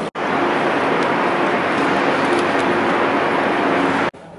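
Loud, steady roar of street traffic, with a faint engine hum running under it.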